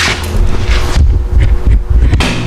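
Handling noise on the camera's microphone as it is carried: low, uneven rumbling with a sharp knock at the start.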